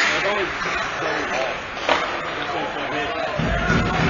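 Ice hockey play heard from the stands: a sharp crack at the start and another about two seconds in, over indistinct voices of people in the rink. A low rumble comes in near the end.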